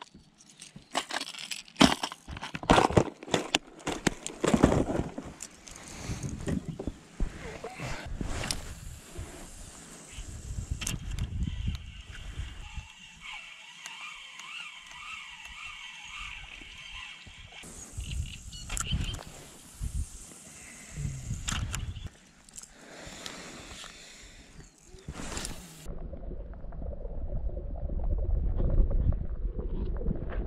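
Clicks and rattles of fishing lures being handled in a clear plastic tackle box, then a spinning reel being worked from a kayak. About four seconds before the end the sound turns to a low, muffled rumble as the microphone goes under water.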